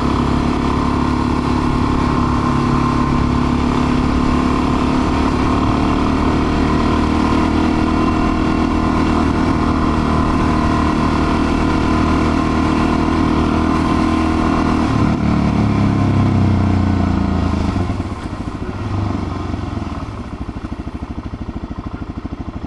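Suzuki DR-Z400's single-cylinder four-stroke engine running steadily at cruising revs. About 15 seconds in its pitch falls as the bike slows, and near the end it drops to a quieter, evenly pulsing low-rev note.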